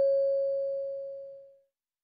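A single chime tone ringing out and fading away about a second and a half in. It is the listening test's signal tone, marking the end of the conversation before the question is read again.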